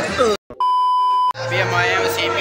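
A single steady, even beep lasting under a second, dubbed in during editing like a censor bleep, after a brief cut to dead silence; voices and the hall's hum come back straight after it.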